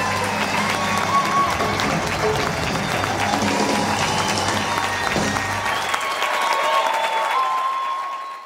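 Concert audience applauding and cheering while the live band plays on; the band's low bass notes stop about six seconds in.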